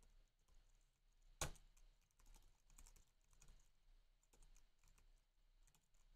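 Faint typing on a computer keyboard: scattered soft keystrokes, with one sharper key click about a second and a half in.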